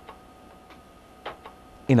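A few sparse, sharp ticks, about five in two seconds and unevenly spaced, over a faint steady tone.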